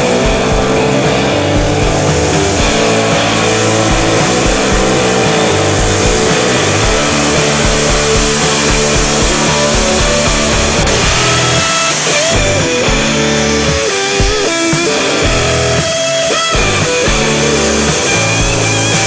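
Rock music with electric guitar over a steady beat.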